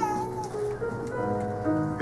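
Processional music with long held notes, and a short wavering, sliding tone right at the start.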